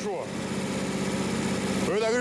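Warmed-up car engine idling steadily, with the water pump circulating coolant through an open thermostat.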